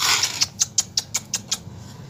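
Hands scraping and crumbling dry red soil: a rustle, then a quick run of small crisp clicks, about five a second, that stop about a second and a half in.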